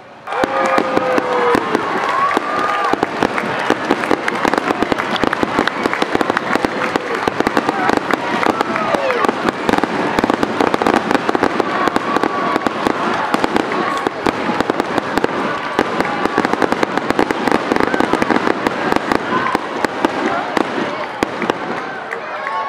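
Fireworks going off in a continuous rapid barrage of bangs and crackles that starts suddenly and keeps up without a break, with a few rising and falling whistles over it. This is typical of a show's finale.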